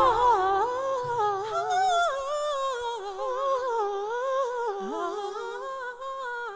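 Two women's voices singing a slow, sustained melody together with a wavering vibrato, almost unaccompanied. The voices fade gradually toward the end.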